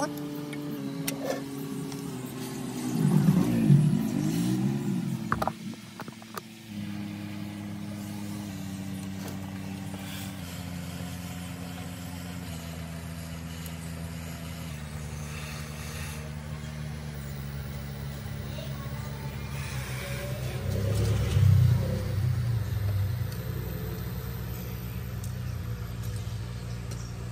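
Blower of a hot-air rework gun running with a steady whine that steps down in pitch several times as the airflow is turned down. There are louder rushes of air about three seconds in and again near twenty-one seconds.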